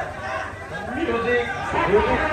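Several people's voices chattering and calling out over one another, with no clear words.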